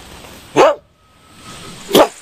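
A dog barking twice, with two short, loud barks: one about half a second in and one at the end.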